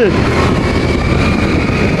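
A motorcycle riding along a road: wind buffeting the microphone over steady engine and road noise, with a faint whine that rises slightly.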